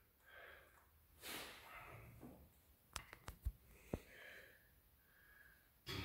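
Faint breathing of a powerlifter lying braced under a loaded bench press bar: several short, quiet breaths, with a quick run of faint clicks about three seconds in.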